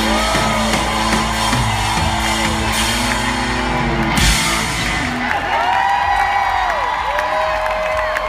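Live rock band with electric guitars and drums playing the final bars of a song, ending on a last hit about four seconds in. The crowd then whoops and cheers over the ringing-out guitars.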